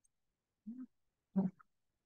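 Two brief vocalizations, less than a second apart, each a short pitched sound with no words.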